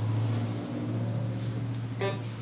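A low acoustic guitar string plucked once and left ringing as a steady, slowly fading low note.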